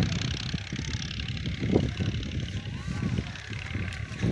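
Indistinct voices of people some way off, over a steady low rumble.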